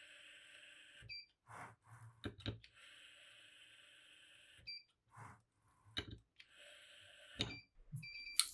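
Mountz MD-series electric torque screwdriver running down screws three times. Each faint steady motor whine ends in a short beep as the fastening reaches torque, and there are light knocks in between.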